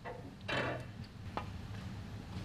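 A snooker cue tip strikes the cue ball with a single sharp click about 1.4 seconds in, after a fainter click just before it. A brief, louder burst of noise comes about half a second in.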